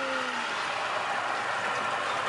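Small outboard motor running steadily under way, with water rushing past the hull. A person's drawn-out "yeah" trails off about half a second in.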